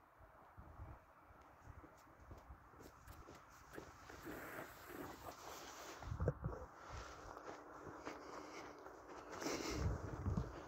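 Faint footsteps walking through snow on lake ice at a slow, uneven pace, with a louder thump about six seconds in.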